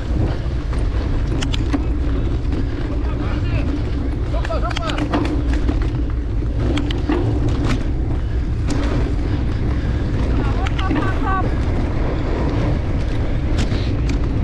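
Wind buffeting an action camera's microphone and a steady rumble from a cyclocross bike's knobby tyres running over rough grass and dirt, with scattered sharp rattling clicks from the bike. Voices shout briefly twice, about five seconds in and again near eleven seconds.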